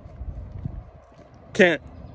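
Short pause in a man's outdoor talk, filled with low wind rumble on a phone microphone and faint footsteps on a paved path. He speaks a word near the end.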